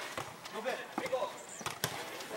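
A few sharp thuds of a football being kicked and bouncing on artificial turf, the loudest near the end, under faint shouts from players.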